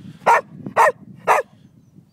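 A liver-and-white spaniel barks three times in quick succession, about half a second apart.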